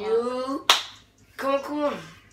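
A child's voice drawing out two slow, exaggerated syllables, with one sharp hand snap between them about two-thirds of a second in.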